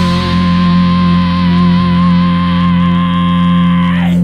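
Rock song's held chord on distorted electric guitar, ringing steadily, with a high sustained note that wavers in vibrato over it.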